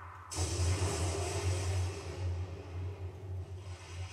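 Anime episode soundtrack playing quietly: music, with a rushing, rumbling noise that starts suddenly about a third of a second in.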